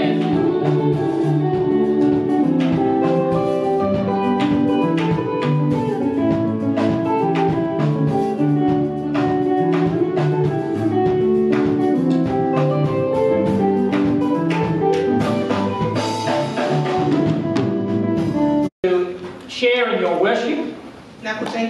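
Church choir singing with a band: guitar and drum kit keeping a steady beat. The music breaks off abruptly near the end.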